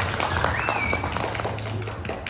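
Applause: many hands clapping irregularly, thinning out toward the end.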